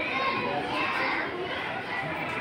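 A group of children's voices talking over one another in a steady murmur of chatter.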